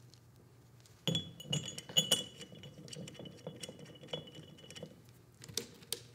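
Small metal bolts clinking and clicking against each other as they are picked from a loose pile and handled, starting about a second in, with a faint ringing after the sharper clinks.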